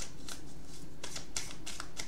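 Hand-shuffling a tarot deck: a run of quick, irregular clicks and riffles of card against card.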